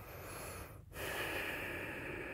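Close-miked breathing through the nose: a soft inhale, a brief break just before the one-second mark, then a steady, drawn-out breath.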